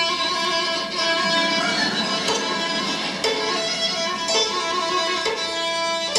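Violin with orchestra, the violin strings plucked by hand rather than bowed, over held notes that change about once a second.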